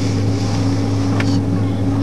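Steady low drone inside an Airbus A330-200's passenger cabin, the engines and air conditioning humming without change while the airliner taxis after landing.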